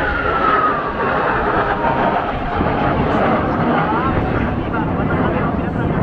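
Jet noise from a six-ship formation of Blue Impulse Kawasaki T-4 jets in flight: a steady rushing roar, with a thin whine that falls in pitch over the first second and a half.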